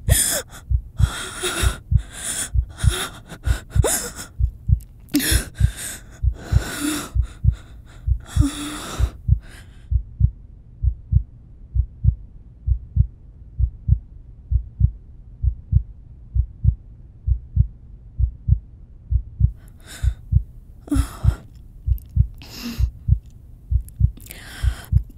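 A heartbeat sound effect: a steady run of low thumps, under a woman's heavy, frightened breathing and gasps. The breathing stops about ten seconds in and returns near the end while the heartbeat carries on.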